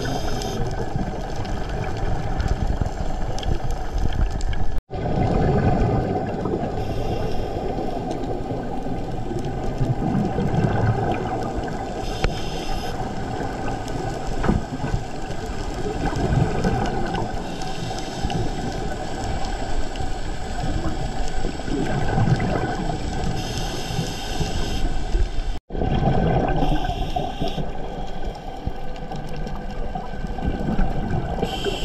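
Underwater sound of a scuba dive heard through the camera housing: a steady rushing water noise, with a diver's regulator breath and a gush of exhaled bubbles coming back every several seconds. The sound cuts out for an instant twice.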